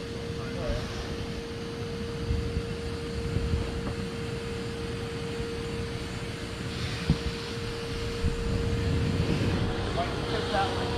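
A steady mechanical hum holding one pitch over a background of noise, with a single knock about seven seconds in.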